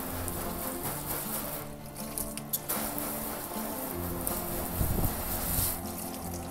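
Water spraying from a hose nozzle onto a car's bonnet, a steady hiss, under background music of held notes.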